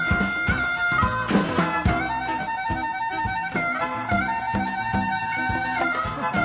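Live band playing on an audience tape: a steady drum beat and electric bass, with a sustained lead melody held in long notes over them.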